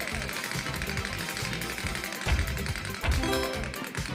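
Game-show music with the top-slot spin effect: a fast, even ticking as the slot reels turn, then two low thumps and a short pitched chime as the reels come to a stop.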